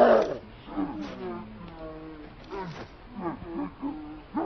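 Chimpanzee calling: a loud call at the very start, then a run of quieter rising-and-falling calls, mixed with men's voices.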